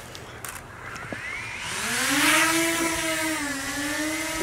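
DJI Mini 2 quadcopter's motors spinning up for takeoff: a whine that rises in pitch from about a second and a half in, then holds nearly steady with a slight dip in pitch near the end.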